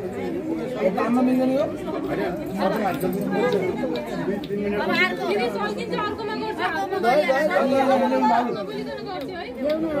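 Several people talking at once, a steady overlapping chatter of voices.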